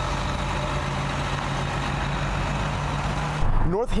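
Coach bus's diesel engine running with a steady low hum, cut off suddenly about three and a half seconds in, where a man's voice begins.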